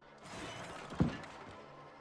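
Distant crashing, a film sound effect: a noisy crash with one sharp hit about a second in, then fading away.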